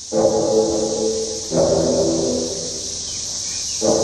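Music of held chords, several notes at once, changing about every second or two, over a steady high-pitched buzz of cicadas.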